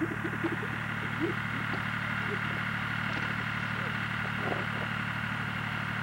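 A motor vehicle engine idling, a steady, even hum.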